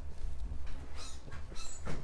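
Marker pen writing on a board, making short squeaky strokes about a second in and again near the end, over a low steady room hum.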